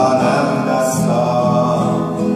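A man singing into a microphone, accompanying himself on an acoustic guitar.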